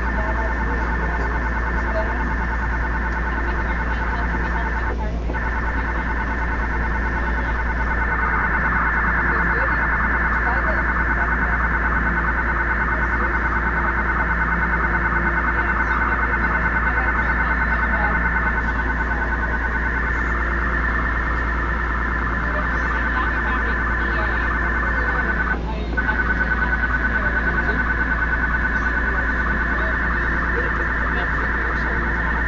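TTC subway car's telemetry data signal leaking onto the passenger PA speakers: a steady stream of harsh data tones with a low hum beneath. The tones break off briefly about five seconds in and again near the end, where they come back louder. This is a fault: the car's data line is being output on the customer audio line.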